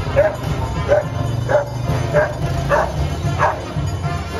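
A dog barking repeatedly, about six sharp barks spaced roughly two-thirds of a second apart, over steady low music.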